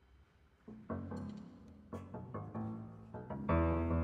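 Piano, strings and double bass playing a contemporary concert piece. After a hushed first second, short separate notes come in. Near the end the bowed strings enter together in a loud, sustained chord.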